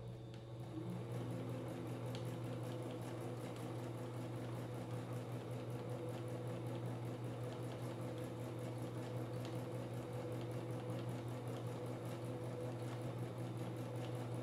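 Domestic sewing machine stitching steadily at an even speed during free-motion quilting: a motor hum with a fast, regular needle tick, the fabric guided by hand rather than pulled by the machine. It comes up to speed in the first second, then holds constant.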